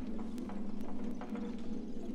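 Avant-garde orchestral music: a steady held low tone with many short, dry percussive clicks and taps scattered over it.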